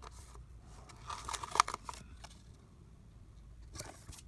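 Paper sticker sheet being handled, with a sticker peeled off and pressed onto a planner page: soft paper rustles and a short run of small clicks and scrapes about a second in.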